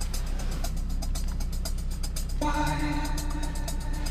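Dance music with a steady beat playing from a car stereo, heard inside the cab; a held chord comes in a little past halfway. A steady low hum from the idling engine lies under it.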